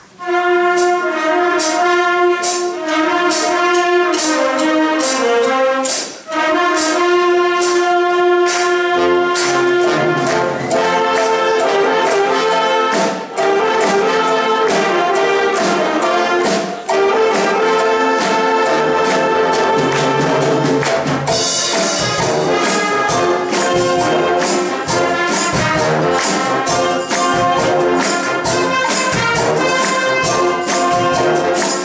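A wind orchestra playing live: a brass-led opening melody, with the full band and a steady percussion beat coming in about nine seconds in, and a bright crash about twenty seconds in.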